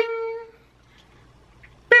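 Two identical 'bing' chime sound effects, one at the start and one near the end, each a single bright pitched tone that starts sharply and rings out for about half a second.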